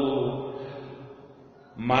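A man's voice in a drawn-out, chant-like delivery, the last syllable held on one pitch and fading over the first second. A short pause, then the voice starts again near the end.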